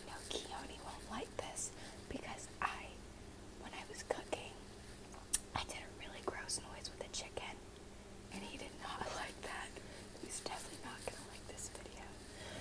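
A woman whispering close to the microphone, too quietly for words to be made out, with scattered short clicks throughout.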